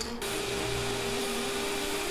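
Bench grinder's abrasive disc running steadily with a constant whine, grinding the edge of a small acrylic disc. It starts just after the beginning.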